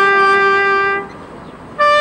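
Solo trumpet playing a slow melody: a long held note ends about a second in, and after a short breath a higher note begins near the end.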